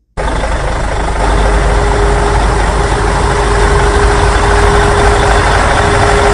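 Loud, steady heavy-machinery engine running with a deep rumble and a steady hum tone joining about a second in: an excavator engine sound effect laid over the toy excavator's work. It starts and cuts off abruptly.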